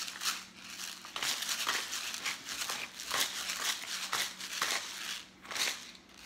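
Hand-twisted pepper grinder crushing whole black peppercorns: a run of gritty crunching strokes, about two a second, as the grinder head is turned back and forth.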